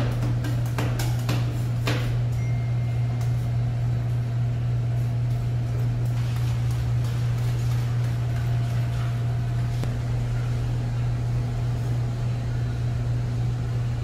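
Metal spatulas chopping, tapping and scraping on the frozen steel plate of a rolled-ice-cream counter, densest in the first two seconds, over a steady low machine hum.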